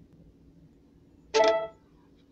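A single short, loud pitched tone with a bright, rich sound, starting suddenly about a second and a half in and dying away within half a second, over faint room hum.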